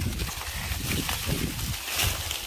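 Dry corn leaves and husks rustling as a hand handles a standing corn plant, over a low, uneven rumble.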